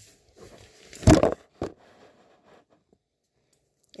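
Handling of a paper-and-plastic sterilization peel pouch: faint rustling, a loud crackle-thump about a second in and a short click soon after.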